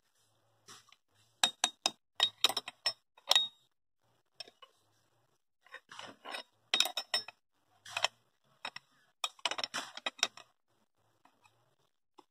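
A spoon stirring in an aluminium pressure-cooker pot, clinking and scraping against the metal sides in several short bursts of quick clicks with a faint ring.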